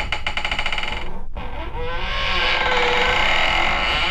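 Eerie sound-effect bed: a low rumble with a rapid fluttering for about the first second, then a wavering, warbling tone of several pitches that bends up and down.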